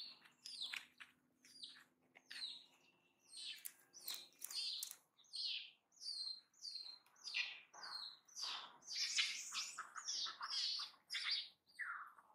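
Baby pig-tailed macaque calling in a long run of short, high-pitched cries, each falling in pitch, coming faster and louder in the second half: the distress calls of a frightened infant.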